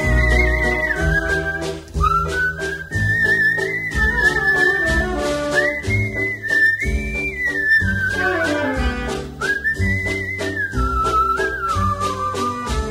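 Instrumental passage of a Thai popular song: a whistled melody with vibrato, sliding between notes in phrases of a few seconds, over a band with bass and light rhythmic percussion.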